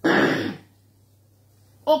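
A woman clearing her throat with a short, harsh cough into her hand, lasting about half a second.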